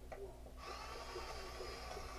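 Cordless drill running with a steady whine that starts about half a second in, its bit driven into a wooden board.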